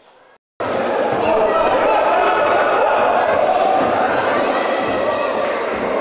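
Live sound of an indoor basketball game: a basketball bouncing amid a steady din of crowd and player voices echoing in a large sports hall, starting abruptly about half a second in.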